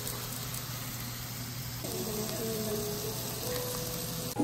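Meat sizzling on a tabletop Korean barbecue griddle, a steady frying hiss, with soft background music whose notes come through more clearly about two seconds in.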